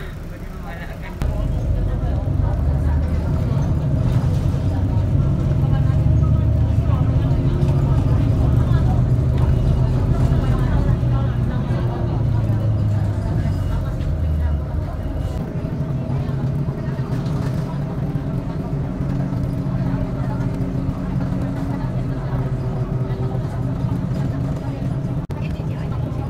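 City bus heard from inside the passenger cabin: engine and road rumble rise sharply about a second in as the bus gets moving, then run on as a heavy low drone with a steady hum.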